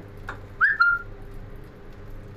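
A brief high whistle-like chirp about half a second in, dipping slightly in pitch and then held for a moment before stopping, over a faint steady background hum.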